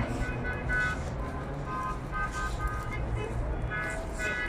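Steady low rumble of background ambience with faint, broken snatches of a distant voice.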